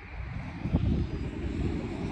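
Steady low rumble of a car driving, its engine and road noise heard from inside the cabin.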